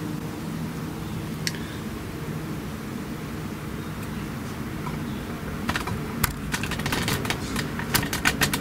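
A steady low hum, with a quick, irregular run of light metallic clicks and taps in the last two seconds or so as a hand handles the shovel's swing clutch band and linkage.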